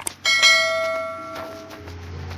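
A short click and then a bright bell ding that rings out and fades over about a second and a half: the notification-bell sound effect of an animated subscribe button.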